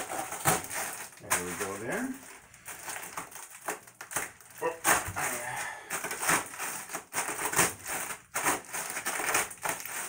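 Blocks of dry instant ramen noodles being crushed by hand inside their sealed plastic packets: an irregular run of crunches with the packet film crinkling.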